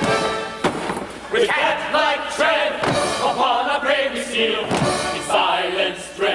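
Theatre orchestra playing with a men's chorus singing, broken by several irregular heavy thumps of feet stamping on a wooden stage.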